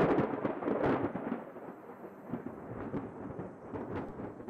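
Thunder: a sudden clap, then a rumble that slowly fades.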